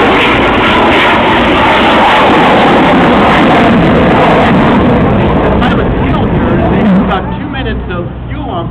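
A rocket racer's Armadillo Aerospace rocket engine firing in flight: a loud, steady rushing noise that starts just before and dies away about seven seconds in.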